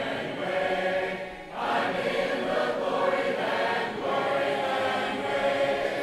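A church congregation singing a hymn in several voice parts without instruments, on long held notes, with a short breath break about a second and a half in.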